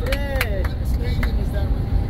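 Steady low road and engine rumble inside a moving minibus, with a short voice in the first half second.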